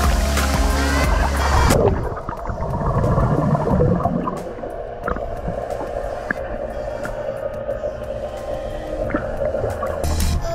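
A splash as a person plunges into a pool, then muffled underwater bubbling for a couple of seconds, over background music.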